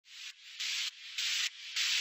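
Four short swells of hissing noise, evenly spaced a little over half a second apart, each rising and then cutting off: a rhythmic noise effect in a soundtrack's intro.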